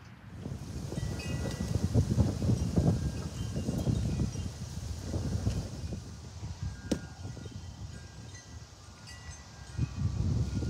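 Gusty wind buffeting the microphone, with metal wind chimes ringing now and then in short high tones. A single sharp click comes about seven seconds in.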